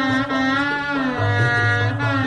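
Shehnai playing a melody that bends and slides between notes over a steady held drone.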